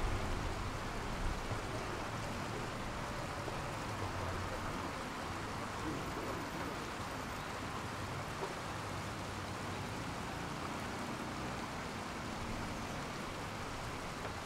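Steady ambience of a shallow city stream: water running over rocks and small fountain jets in an even hiss, with a low rumble of road traffic underneath.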